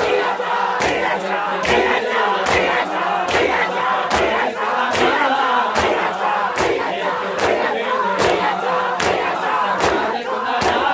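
A crowd of mourners doing matam, striking their chests with open hands in unison, a sharp slap about every 0.8 seconds, over the crowd's loud chanting voices.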